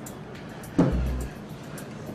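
Soft background music with a deep low note, struck suddenly with a thump about a second in.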